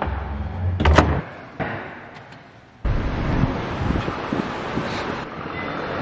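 A front door's latch clicks sharply about a second in as the door is opened by hand. Near three seconds in the sound changes abruptly to steady outdoor traffic rumble.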